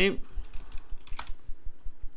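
Computer keyboard being typed on: soft, dull key thuds at about four a second, with one sharper click about a second in.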